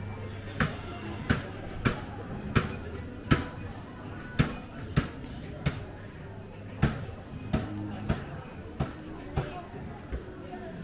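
Footsteps on stone paving, sharp regular steps at about one and a half a second.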